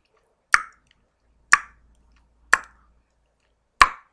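Four sharp mouth clicks, about a second apart, each a short hollow pop made with the tongue, of the kind a dry mouth produces.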